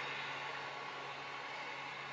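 Steady low hiss with a faint hum: the background noise of the voiceover microphone between phrases.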